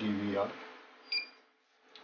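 A man's voice trails off, then about a second in a CCTV DVR gives one short, high electronic beep as its 12 V power plug goes in.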